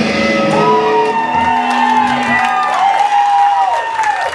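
Live rock band with electric guitars, bass and drums ending a song: the dense playing thins into held, wavering guitar tones as the bass drops away about halfway through. The audience whoops and shouts over it.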